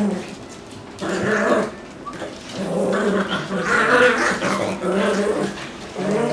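Dogs growling during rough play: a short growl about a second in, then a longer run of drawn-out growls.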